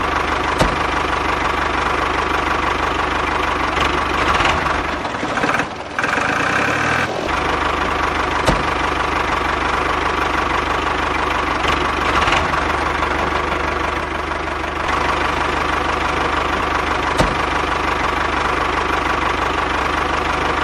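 Engine-like running of a miniature DIY tractor as it pulls a small harrow through sand. It is steady throughout, apart from a short change about five to seven seconds in, with a few light clicks.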